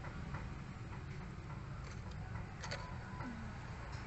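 A few scattered small clicks and ticks, the sharpest about two and a half seconds in, over a steady low background rumble, with a brief low tone just after three seconds.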